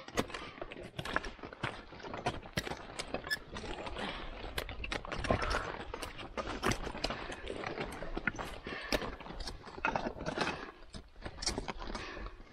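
Crampon points clacking and scraping on rock as climbers step up a boulder ridge: an irregular run of sharp clicks over a low rumble.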